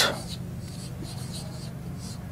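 Marker pen scratching on a whiteboard in several short strokes as a word is written.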